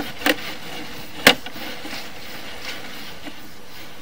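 Sewer inspection camera's push cable being fed along the pipe, with two sharp clicks over a steady hiss: a small one about a third of a second in and a louder one just over a second in.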